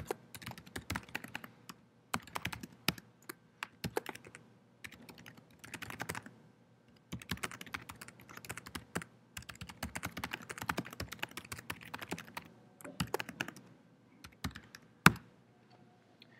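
Typing on a computer keyboard: quick bursts of keystrokes with short pauses between them, and one sharper, louder key strike about a second before the end.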